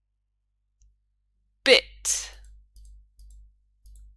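A person's voice: one short loud syllable about two seconds in, followed at once by a breathy hiss. A few faint clicks come after it.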